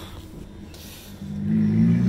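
A car engine running at low revs as the car drives slowly by, its low hum growing suddenly louder about a second in.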